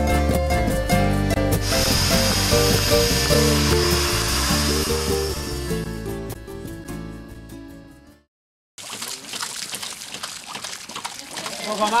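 Background music fading out over the first eight seconds and cutting to a brief silence. After it comes a spray of water from a hose splashing down, with a man's voice at the very end.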